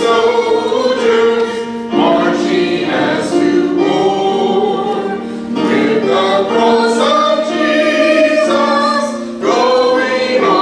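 A congregation singing a hymn together, holding long notes that change every second or two.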